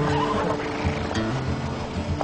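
Background music with sustained low notes, and a horse whinnying briefly near the start.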